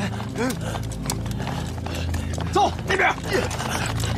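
A German Shepherd dog barking: one bark about half a second in, then a quick run of barks near the end, over the clatter of running boots on pavement and a steady low drone.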